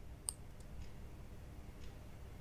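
A computer mouse button clicking once, sharply, about a quarter second in, followed by a few faint ticks, over a low room hum.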